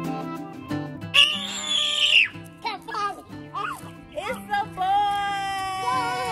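Excited screaming and shouting voices over background music: a loud shriek about a second in, then short shouts, and one long held cheer near the end.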